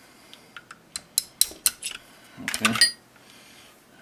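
Small hammer tapping a pin punch to drive a pin out of an airsoft pistol's polymer lower frame: about seven short, sharp taps in under two seconds, getting louder, with a brief ringing clink a little later.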